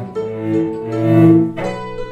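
Acoustic instrumental music with hammered dulcimer: low, ringing notes held and overlapping, with a new struck chord about three-quarters of the way through.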